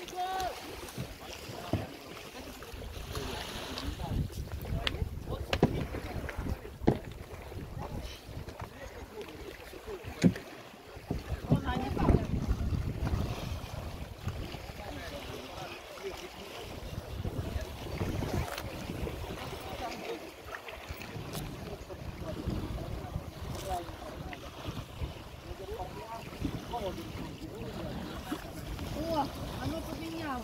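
Gusty wind buffeting the microphone in low, surging rumbles, with faint voices underneath.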